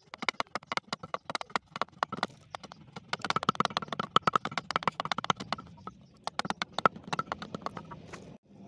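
A large knife blade chopping and shaving a bamboo piece held on a wooden block: a rapid series of sharp wooden knocks, several a second, densest in the middle.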